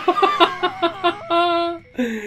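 A man laughing hard: a quick string of short pitched bursts, about seven a second, running into one longer, higher held note near the end.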